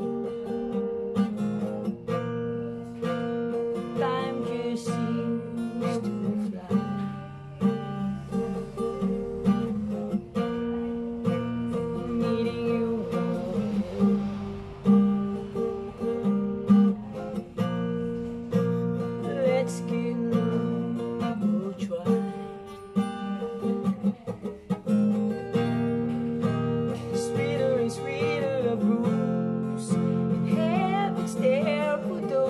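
Acoustic guitar with a capo, playing chords, with a man singing over it at times.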